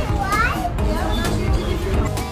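A young child's voice giving a short call that rises in pitch early on, over background music.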